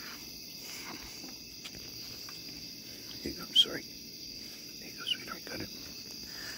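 Steady high chorus of night insects, with one short sharp sound that glides in pitch about three and a half seconds in and a fainter one near five seconds.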